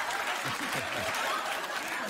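Studio audience applauding, with laughter mixed in.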